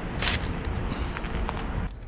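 Faint scuffs and rustles of a person climbing into a car's driver's seat over steady background noise, with a few short soft knocks. The engine is not yet running.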